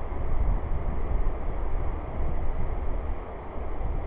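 Wind blowing across the camera's microphone: a rough, rumbling rush that rises and falls in gusts.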